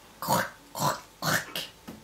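A woman's voice saying "croc, croc, croc!" as a gnawing sound: three short, rasping syllables about half a second apart, for the piglets chewing through the stable door.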